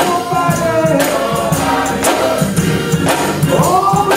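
A man singing gospel into a microphone, his voice sliding and holding long notes, over live church music with a steady percussion beat.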